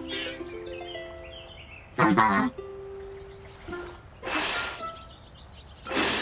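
Cartoon soundtrack of short musical notes and comic sound effects: a cluster of stepped tones at the start, a loud warbling burst about two seconds in, a held note, then a hissing burst a little after four seconds.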